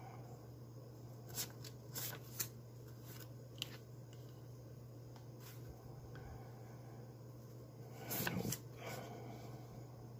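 Canadian polymer $20 banknotes being leafed through by hand, giving a few short, crisp rustles and snaps as notes slide off the stack, over a faint steady low hum.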